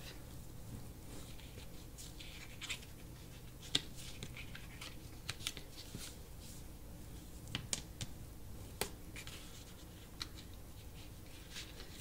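Scored kraft cardstock hinge being folded back and forth and rubbed along its folds with a bone folder: faint, scattered paper scratches and light clicks.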